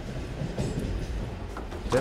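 Interior of slow passenger train 5633/5634, a steady low running noise of the carriage.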